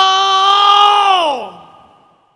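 A long, loud vocal cry held on one pitch, then sliding down in pitch and trailing off about a second and a half in.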